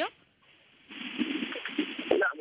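Telephone line audio: about a second of near silence, then the line's hiss with faint, irregular low sounds from the caller's end.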